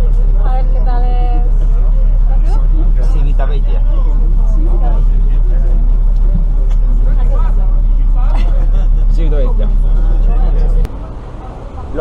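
Steady, loud low rumble of a bus engine heard inside the bus cabin, with passengers' voices chattering over it; the rumble cuts off suddenly near the end.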